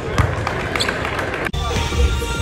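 A basketball bouncing on a hardwood gym floor among voices in the gym, then a sudden cut about a second and a half in to music.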